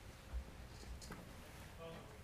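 A man's faint, distant voice, well off the microphone, as a spoken prayer gets under way in a hushed room. A single dull low thump comes about a third of a second in.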